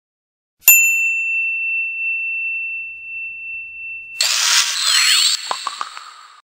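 Closing logo sound effect of a news video ident: a single bright ding about a second in that rings on for about three seconds, then a loud shimmering whoosh with sweeping tones and a few quick ticks near the end as it fades out.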